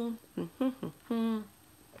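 A woman's voice: the end of a spoken phrase, a few short vocal sounds, then a brief held, steady-pitched hum about a second in.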